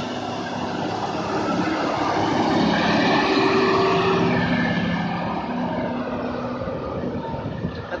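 MTZ tractor's diesel engine running steadily as the tractor drives past close by, growing louder to about halfway through and then fading as it moves away.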